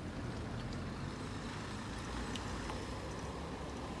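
Steady low rumble of road traffic mixed with wind on a phone's microphone carried on a moving bicycle, with a few faint clicks.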